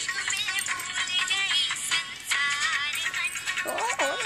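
A song with high singing coming thin and tinny, with no bass, from a small mobile phone speaker.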